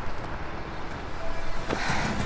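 Steady low rumbling noise, with a sudden rushing burst near the end.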